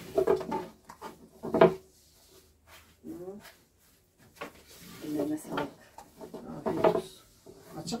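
A long thin wooden rolling pin (oklava) rolling and knocking on a wooden board as a sheet of baklava dough is wrapped around it and rolled out. It comes in irregular bouts of thuds and rubbing, with one sharp knock about a second and a half in.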